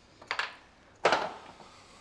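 Two short clatters of a hand tool being put down on a workbench, the second, about a second in, louder with a brief ring-out.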